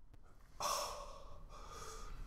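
A man's audible, gasp-like breath starting suddenly about half a second in and trailing off over about a second.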